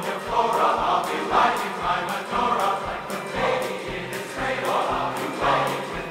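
Large men's chorus singing an upbeat number with band accompaniment, over a steady beat of about two thumps a second.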